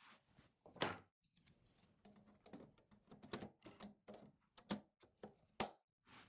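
Faint, scattered plastic clicks as terminal blocks are pushed and snapped into a SIMATIC ET 200SP HA carrier module. The clearest click comes about a second in, followed by several smaller ones.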